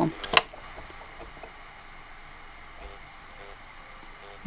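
Quiet room tone with a couple of brief clicks near the start, from handling thin bracelet wire and pliers on a felt mat.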